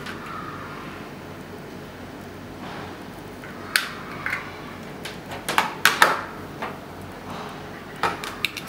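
Handling noise from a plastic wireless charging pad and its USB cable: a few sharp clicks and taps, mostly in the second half, as the cable's plug is pushed into the pad. A steady hiss underneath.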